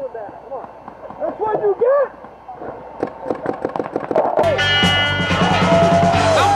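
Voices shouting, then a rapid run of paintball marker shots. About four and a half seconds in, louder music cuts in abruptly.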